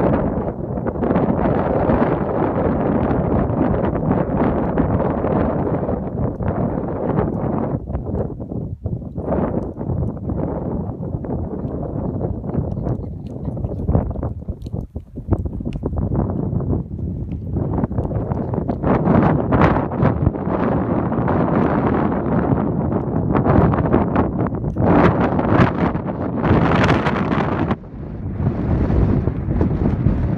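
Gusting wind buffeting the microphone, rising and falling, with brief lulls around the middle and near the end.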